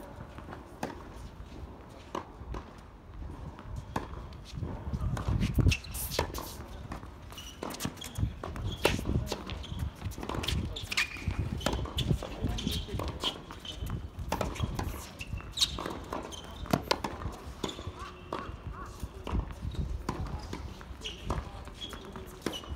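Tennis ball being struck by racquets and bouncing on a hard court during a rally, a series of sharp pops at uneven spacing, with players' footsteps.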